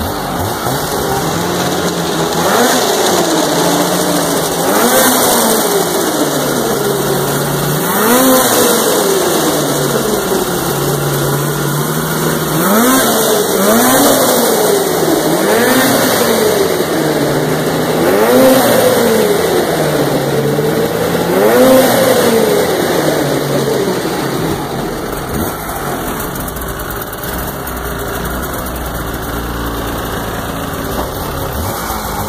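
2015 Polaris Rush AXYS 800 Pro-X snowmobile's 800 two-stroke twin engine on its first run: idling, then revved in short throttle blips every two to three seconds, about eight times, each pitch rising and falling back, before settling to idle near the end.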